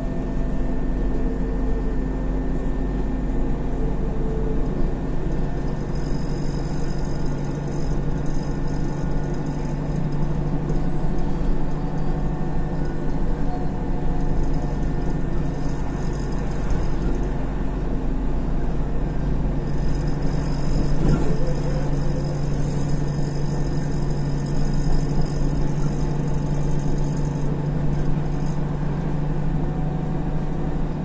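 Isuzu Novociti Life city bus heard from inside while under way: a steady engine drone with road noise throughout. A faint high-pitched whine comes in twice, each time for several seconds.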